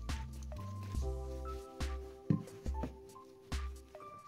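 Background music: held chords over a bass line that changes note every half second or so, with sharp percussive hits.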